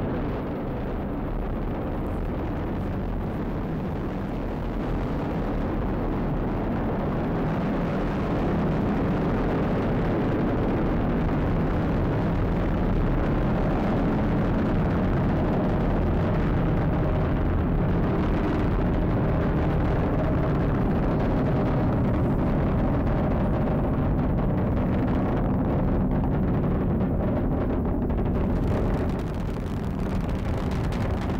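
Falcon 9 first stage's nine Merlin engines running at full thrust during ascent: a deep, steady rumbling noise that grows a little louder about eight seconds in and dips slightly near the end.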